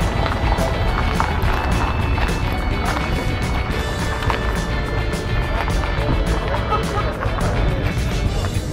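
Background music playing steadily, with short sharp accents scattered through it.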